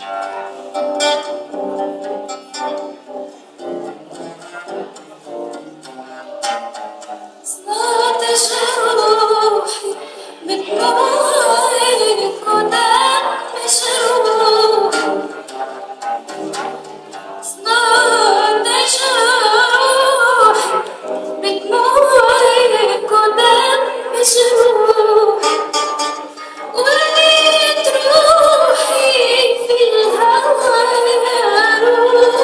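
Live Tunisian song by a small acoustic ensemble with guitars and cello. The first seven seconds or so are plucked instruments alone, then a woman's singing voice comes in over the accompaniment and carries the melody in phrases.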